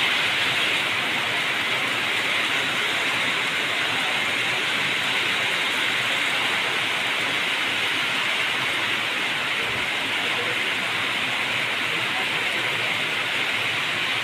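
Rain falling steadily, an even hiss with no breaks.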